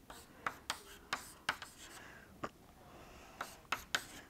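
Writing by hand: a pen or marker making short, irregular strokes and taps, about eight in four seconds.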